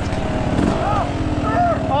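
Dirt bike engine running at low revs with a steady rapid firing pulse as the bike bogs down and tips over in the creek bed. A voice exclaims "Oh" at the very end.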